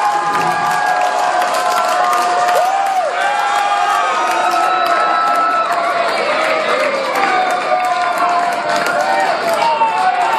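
Concert audience cheering and shouting, many voices whooping over steady clapping.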